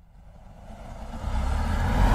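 A sound-effect swell for an animated logo: a low rumble that starts from near silence and grows steadily louder.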